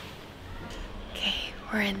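A woman speaking softly, close to a whisper: a few breathy words near the end, after about a second of low room noise.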